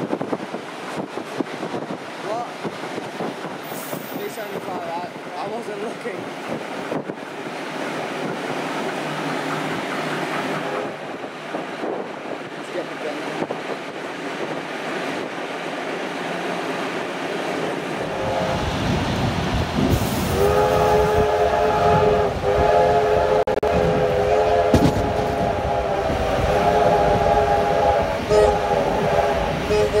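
Train running noise at speed, then in the last third a train's chime whistle sounding a chord of several notes, held long with short breaks, over the rumble and clatter of the carriage wheels.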